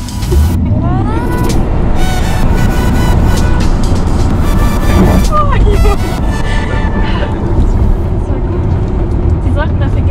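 Cabin of a Tesla Model 3 Performance under hard acceleration: a loud, steady rumble of road and wind noise that sets in sharply at the start, with a passenger laughing. Background music plays over it.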